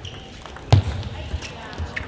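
Table tennis rally: a plastic ball struck by rubber-faced rackets and bouncing on the table. One sharp knock with a low thud comes about three quarters of a second in, followed by a few lighter ticks.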